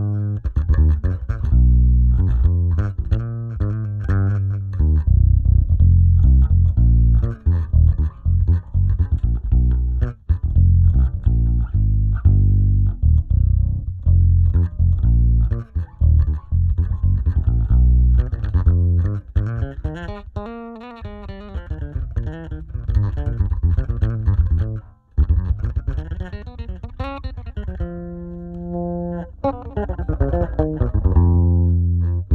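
Electric bass played through a Zoom B6 multi-effects unit's SGT preamp model into a miked Aguilar 4x10 cabinet with tweeter: a busy run of plucked notes with sliding pitches about two-thirds of the way through, a brief break, then a held chord near the end.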